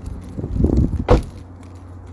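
Phone microphone handling noise: low rumbles and one sharp knock about a second in, then a quieter low hum.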